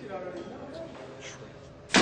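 A payphone handset slammed down onto its metal hook: one sharp, loud bang near the end, after a stretch of faint muttering.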